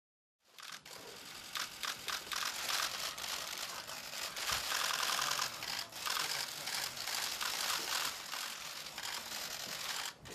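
Many still-camera shutters firing rapidly and overlapping in a dense run of clicks, starting about half a second in.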